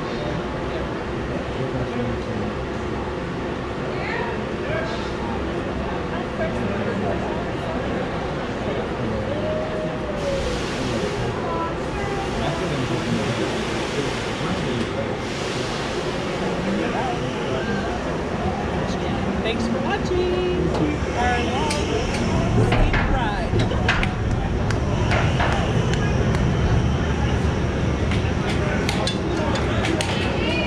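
Yukon Striker roller coaster train on its track, a steady mechanical rumble that grows louder in the last several seconds as the train moves from the brake run into the station, with faint voices around it.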